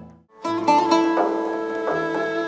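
A traditional string ensemble with plucked strings playing live. One passage dies away into a brief silence, and a new passage of plucked and sustained string notes starts about half a second in.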